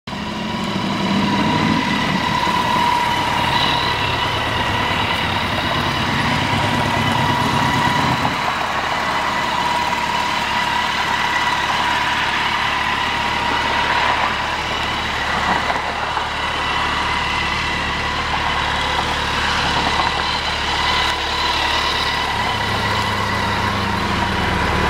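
Kawasaki Concours 14's 1,352 cc inline-four engine idling steadily; its low rumble shifts lower about eight seconds in.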